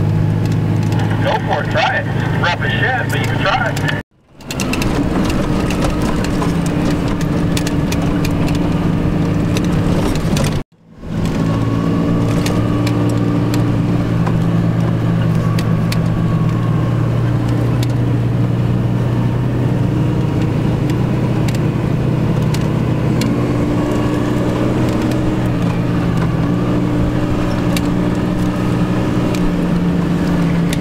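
Off-road vehicle's engine running steadily at low trail speed, a constant low drone. The sound cuts out abruptly twice, briefly, about four and eleven seconds in.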